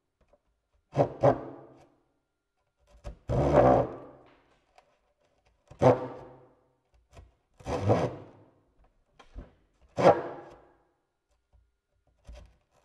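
Woodworking sounds played back through speakers: sharp knocks on wood alternating with longer rough scraping strokes, one event about every two seconds, with a double knock near the start.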